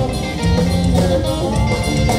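Live rock band playing an instrumental stretch of a song between sung lines: guitar over a drum kit.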